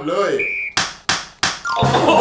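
A short high tone, then three sharp knocks about a third of a second apart and a last hit with a steeply falling swoop near the end, as a hand slaps the hard shell of a helmet on a seated player's head.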